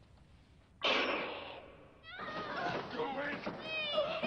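A sudden loud crash about a second in, then a girl's high-pitched screams and cries, wavering up and down in pitch, from about two seconds on.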